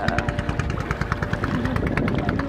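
Small boat's motor running, giving a rapid, even pulse.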